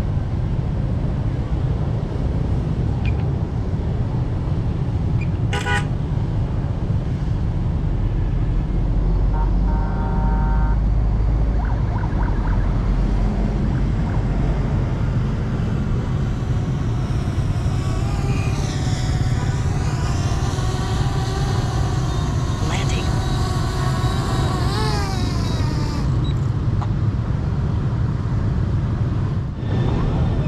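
Road traffic running steadily, with short horn toots about ten seconds in and voices passing by in the second half.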